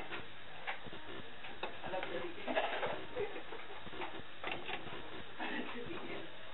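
Puff puff dough balls deep-frying in hot vegetable oil: a steady sizzle with fine crackling throughout.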